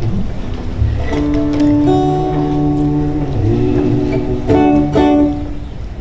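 Acoustic plucked string instrument played off camera before the song begins: a few ringing chords start about a second in, are struck again about four and a half seconds in, then fade away.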